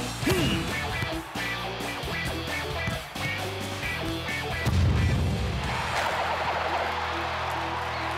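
Cartoon background music with steady held notes; about five seconds in a low thud, after which a crowd cheers to the end.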